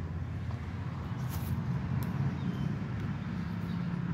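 A man biting into and chewing a breakfast burrito, with a couple of faint wet clicks about a second and two seconds in, over a steady low engine hum from nearby vehicles.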